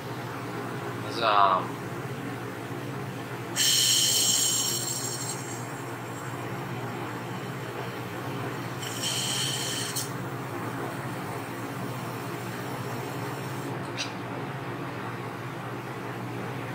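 Two bursts of hissing as pressurised beer and CO2 are bled through the Zahm & Nagel tester's valve and spout: the first comes about three and a half seconds in and lasts nearly two seconds, the second lasts about a second near the ten-second mark. A brief rising squeak comes about a second in. A steady low hum from the walk-in cooler's refrigeration runs underneath.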